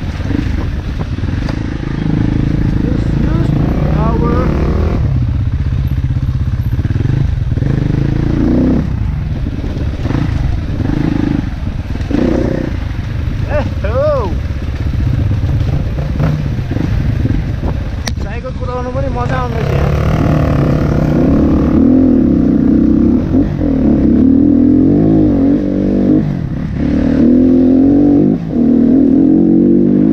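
Dirt bike engine running and revving up and down as the bike is ridden over a rough dirt trail, louder and busier in the second half.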